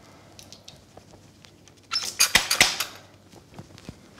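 Brief burst of handling noise, clicks and rustling with a few sharp knocks, about two seconds in, over quiet kitchen room tone.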